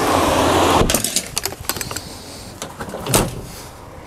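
A car drives past close by, its tyre and engine noise loudest in the first second and then fading. Scattered clicks follow, with a single sharper knock about three seconds in.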